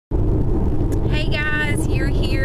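Steady low road-and-engine rumble inside a moving car's cabin, with a woman's voice briefly heard about a second in.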